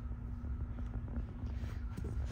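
Steady low rumble with a faint constant hum: background room noise, with no distinct event.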